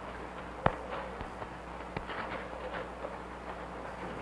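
A few sharp clicks of press camera shutters over a steady low hum, with faint murmuring voices in the background.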